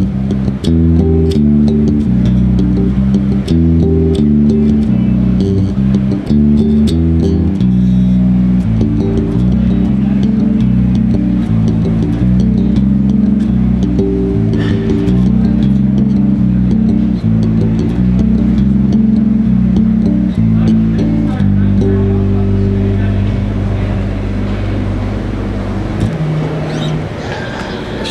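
Electric bass guitar, a four-string Spector, played solo through an amp. An original tune opens with a quick riff of changing notes, then moves into slower notes and a few long held low notes near the end.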